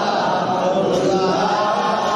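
Unaccompanied male voices chanting a devotional milad song praising the Prophet, one leading voice with others singing along, the melody held without a break.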